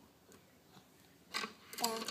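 Quiet at first, then a short burst of noise, and near the end a toddler begins singing 'da' in a high child's voice.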